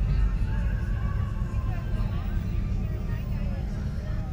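Indistinct voices of a street crowd over a steady low rumble of idling cars.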